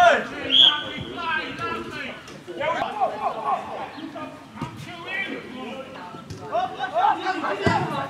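Players' voices shouting and calling to each other across a football pitch, with a few short sharp knocks, the loudest near the end.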